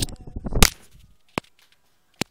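Handling noise on the camera: rustling and bumps ending in a loud, sharp knock just over half a second in, then a single short click a little later.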